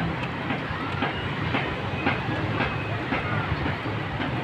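Beach ambience: a steady wash of noise with faint voices of beachgoers, and light steps on sand about twice a second as the person filming walks along the beach.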